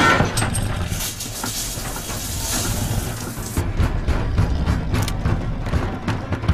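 Film soundtrack: a tense music score over a low rumble. A hissing wash cuts off sharply about three and a half seconds in, and scattered knocks follow.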